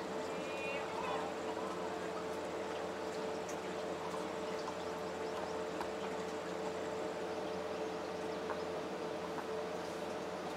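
Steady background noise with a constant low hum, and a brief faint voice about half a second in.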